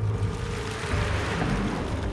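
Water rushing and splashing over rock, a steady, even rush of noise.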